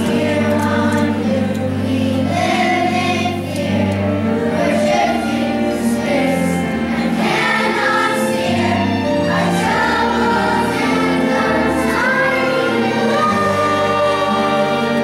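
A chorus of children singing a musical-theatre song together over instrumental accompaniment, a steady low bass line beneath the voices.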